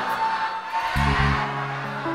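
Live band music of an Isan lam sing (mor lam) song in a gap between the vocal lines. A single held note sounds over a thinned-out backing for about a second, then the bass and band come back in.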